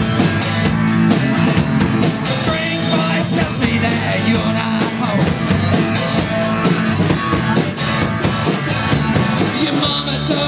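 Live rock band playing loud and steady: electric guitars over a drum kit, with rapid, even cymbal strikes.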